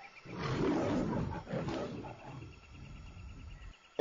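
A big cat roaring: one rough roar that swells in about a quarter second in, is loudest over the next second or so, then tails off and cuts off abruptly shortly before the end.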